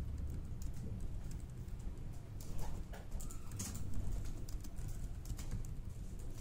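Typing on a laptop keyboard: irregular key clicks, busiest around the middle, over a steady low room rumble.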